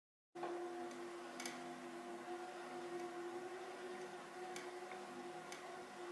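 Faint room tone with a steady hum, starting about a third of a second in, and a few faint, irregularly spaced clicks.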